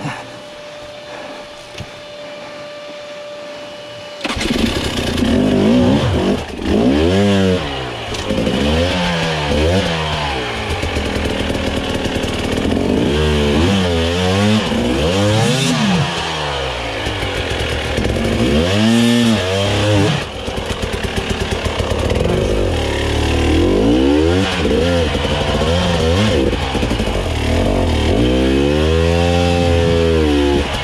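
Husqvarna TE300i's fuel-injected two-stroke single-cylinder engine starting up about four seconds in, then revving up and down in repeated surges as the throttle is worked under load.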